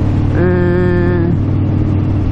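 Harley-Davidson V-twin motorcycle engine running steadily at cruising speed, mixed with wind rush. A short held vocal hum from the rider sits over it for about a second near the start.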